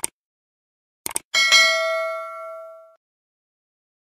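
Subscribe-button animation sound effect: a short click, then a quick double click about a second in, followed by a bright notification-bell ding with several ringing tones that fades out over about a second and a half.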